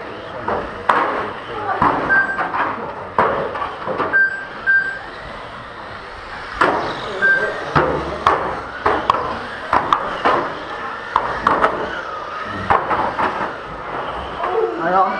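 Busy hall sound at a 1/12-scale RC car race: repeated sharp knocks and clatters of cars striking the track barriers, several short high beeps, and indistinct voices echoing in the room.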